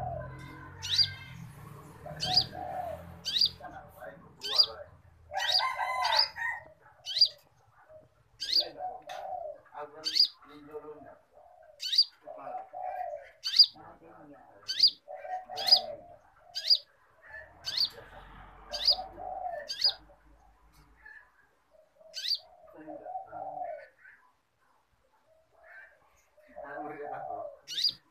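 Small caged songbird calling over and over with short, sharp high chirps, roughly one every half second to second, mixed with lower, softer notes. The chirping falls quiet a few seconds before the end.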